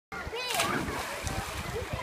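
A splash about half a second in, as a child jumps into the pool, over children's voices chattering around the pool.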